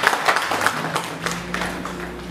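Audience applauding: a dense patter of hand claps that thins out and dies away about a second and a half in.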